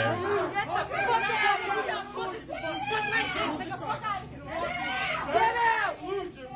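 A group of shoppers shouting angrily over one another at someone who refused to wear a mask, with several voices raised at once.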